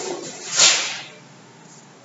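Two short swishing noises about half a second apart, the second louder and higher and fading out over about half a second.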